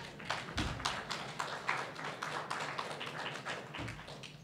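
Small audience applauding, with individual claps heard separately and overlapping.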